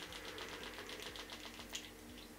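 Faint quick run of small clicks, about eight to ten a second, fading near the end, from a liquid-foundation pump bottle being worked against the cheek to dispense foundation. A faint steady hum lies underneath.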